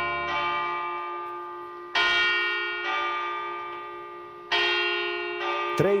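A bell striking in pairs of strokes, each stroke ringing on and fading, the pairs about two and a half seconds apart: it chimes the hour, marking three o'clock.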